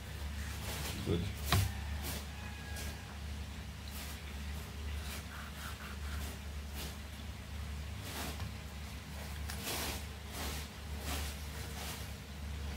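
Kitchen knife scoring whole red snapper on a plate: irregular short scrapes and clicks as the blade cuts through the scaled skin and touches the plate, with a longer scrape near the end. The blade is less sharp than the cook is used to.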